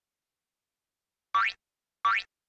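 Cartoon boing sound effect: a single short, rising springy glide about a second and a half in.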